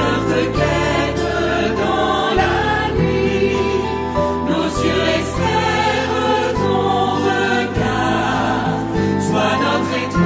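Choir singing the refrain of a French Catholic hymn to the Virgin Mary over a sustained instrumental accompaniment with a moving bass line.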